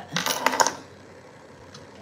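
A short rustle and clatter of a paper sheet being handled on a counter, a cluster of quick clicks and crinkles in the first half-second or so.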